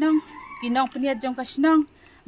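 A woman speaking, with no clear non-speech sound.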